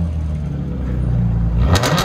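2012 Dodge Charger's 3.6L V6 running steadily at a low engine speed through a straight-piped dual exhaust, with its mufflers and resonators deleted and high-flow cats. A short, sharp, louder burst of sound comes near the end.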